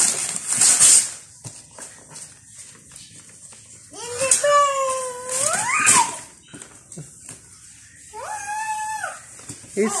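Gift wrapping paper being ripped off a large cardboard box, in short tearing bursts near the start and again around four to six seconds in. Between them come two high, drawn-out vocal cries, one gliding up and down, the other held steady near the end.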